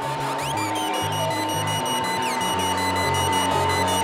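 littleBits Synth Kit analog oscillators driven by the step sequencer, playing a repeating pattern of buzzy low notes that step in pitch, with a steady high tone held beneath them and fast ticking, gliding sounds higher up.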